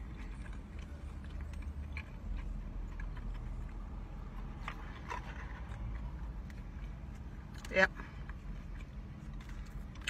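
Faint chewing and mouth clicks from a person eating a potato-coated Korean corn dog, over a steady low hum inside a car. A short spoken 'yep' near the end.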